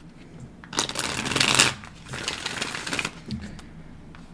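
A tarot deck being shuffled by hand: a dense burst of card noise lasting about a second, followed by about a second of softer card handling and a few light clicks.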